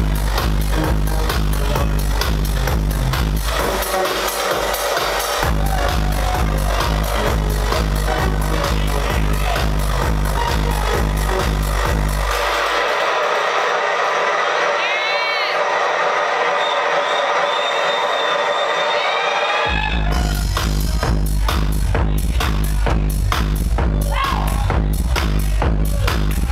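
Electronic dance music from a DJ set played loud through club speakers, a steady kick-drum beat over heavy bass. About twelve seconds in the bass and beat drop out for a breakdown with rising and falling synth sweeps, and the full beat drops back in about twenty seconds in.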